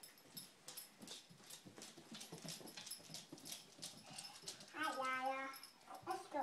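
A small dog's claws clicking on a hardwood floor as it walks: quick, irregular light taps. A brief voice sounds about five seconds in.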